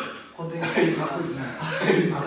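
Men talking and chuckling, the speech starting about half a second in.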